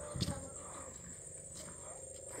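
A single low footstep thump on wooden boardwalk planks about a quarter of a second in, over a steady high-pitched whine.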